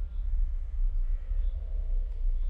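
Forest ambience: a steady low rumble with faint bird calls.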